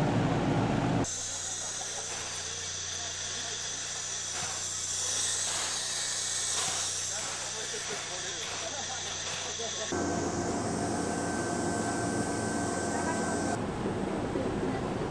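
Steam locomotive standing with a steady hiss of escaping steam over a low hum, framed by louder rumbling inside a railway passenger coach. The coach noise cuts off suddenly about a second in and returns just as suddenly near the end.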